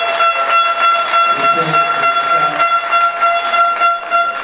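Spectator's air horn blown on one steady note for about five seconds, over sharp claps repeating a few times a second, as the crowd greets a try.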